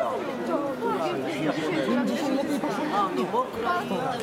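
Chatter: several people talking at once, the words not clear.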